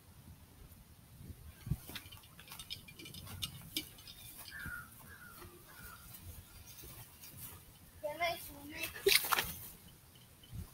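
Faint voices over a quiet background with small scattered clicks, with a louder voice calling out about eight seconds in.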